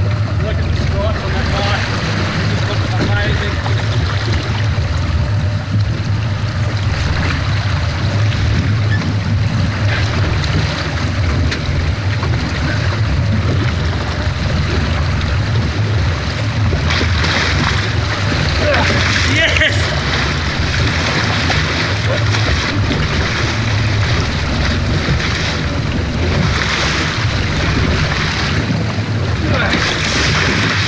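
Boat engine idling steadily under a constant wash of sea and wind noise, with water splashing against the hull as a small black marlin thrashes alongside; the splashing is loudest about 17 to 20 seconds in and again near the end.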